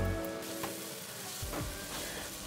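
Diced tomatoes and onions sizzling as they fry in oil in a stainless steel pot, a soft, even hiss. Background music fades out in the first half second.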